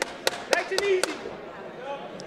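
Five quick, sharp smacks, evenly spaced at about four a second, over the first second, then only a low murmur of hall noise.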